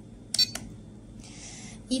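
Two quick clicks about half a second in as the Enter button on a RadioLink RC6GS V3 radio transmitter is pressed to open the EPA setting page.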